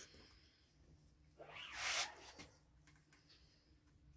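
A glue tube's nozzle scraping along the groove of a fencing foil blade: a short rasping hiss about one and a half seconds in, swelling for about half a second and ending with a couple of small clicks.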